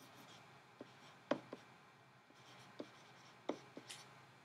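Faint tapping and scratching of a stylus on a drawing tablet as a short label is handwritten, with a handful of light clicks, the sharpest just over a second in.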